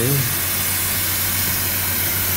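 Steady hiss from a ski flex-testing machine being worked, over a constant low hum.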